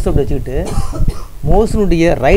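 Speech: a person talking, with a brief noisy breath-like sound a little before the middle.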